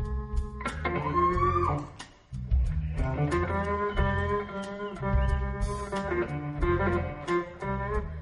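Blues band playing an instrumental passage with guitar, bass and drums, a note bending upward about a second in and a brief break about two seconds in.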